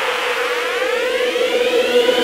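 Electronic dance music build-up: a synthesizer riser sweeping steadily upward in pitch over a steady held tone, with no bass or drums.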